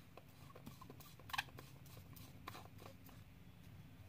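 Faint, scattered clicks and light rattles of small plastic containers of diamond-painting resin drills being handled, with one sharper click about a second and a half in.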